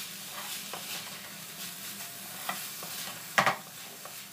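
A spatula stirring and tossing cooked rice in a hot nonstick wok: light scraping and soft clicks over a steady low sizzle, with one louder clatter near the end.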